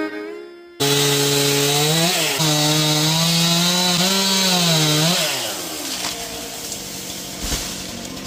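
Chainsaw cutting into a tree trunk, starting abruptly about a second in; its pitch sags and recovers several times as the chain loads in the wood, then it backs off to a quieter sound about five seconds in.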